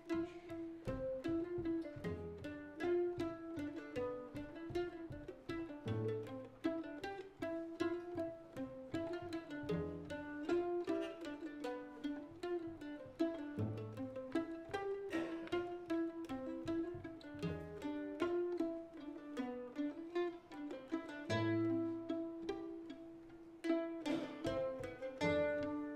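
Acoustic folk ensemble playing an instrumental: a bowed violin melody over quick plucked mandolin notes, with low cello notes coming in every few seconds.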